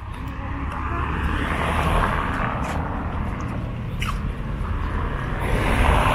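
Street traffic: cars passing on the road, their tyre and engine noise swelling as one goes by about two seconds in and another near the end.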